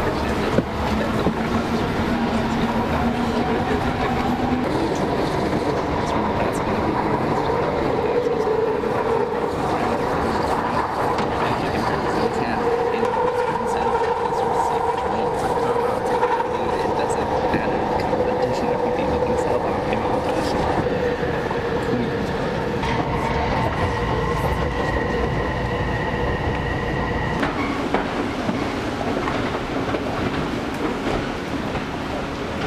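Rapid-transit train heard from inside a moving passenger car: a steady rumble and rattle of the wheels on the track, with steady whining tones from the running gear. A higher whine comes in past the middle and cuts off a few seconds before the end.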